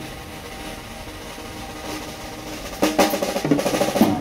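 Live jazz drum kit played with sticks, quietly and evenly for the first three seconds or so, then louder drum and cymbal strikes. Near the end, upright bass and keyboard notes come back in.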